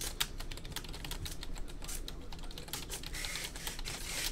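Typing on a computer keyboard: a run of quick, irregular key clicks.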